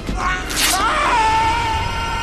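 Film soundtrack: a sudden noisy burst about half a second in, then a long wailing cry that rises and holds on one pitch, over background score music.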